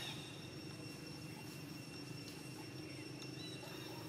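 Quiet outdoor ambience: a steady low rumble under two faint, steady high-pitched tones, with a few faint short chirps.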